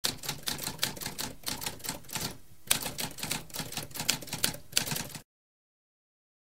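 Typewriter keys typing in a quick run of keystrokes, with a short break a little before halfway, then stopping abruptly about a second before the end.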